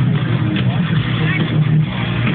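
Heavy metal band playing live: distorted electric guitars, bass and drums, loud and steady, with a voice over them. Muffled and dull at the top, as heard by a camcorder in the crowd.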